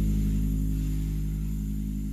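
Background music: a held low chord with a gently pulsing note, fading out.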